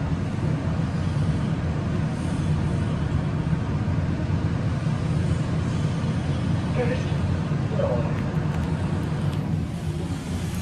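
Steady low hum and rumble of a glass scenic elevator car in motion, with faint voices briefly audible near the end.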